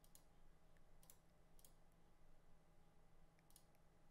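A handful of faint computer mouse clicks, spaced irregularly, over near-silent room tone.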